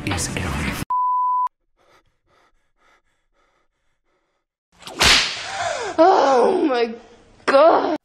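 An electronic beep, a single steady tone lasting about half a second, about a second in, then near silence. About five seconds in, a sudden loud crash-like noise, followed by wordless vocal sounds whose pitch slides up and down.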